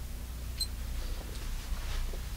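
Steady low electrical hum, with a short high beep about half a second in and faint rustling as someone moves in toward the microphone near the end.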